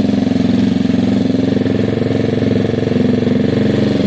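Gilera DNA 125's liquid-cooled single-cylinder four-stroke engine idling steadily and smoothly. It runs evenly now that the carburettor is freshly tuned and an air leak has been sealed.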